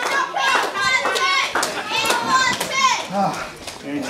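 Children in the crowd shouting and calling out over one another, high-pitched and continuous, with a few sharp smacks among them.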